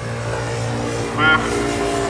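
A motor vehicle's engine running nearby: a steady low hum.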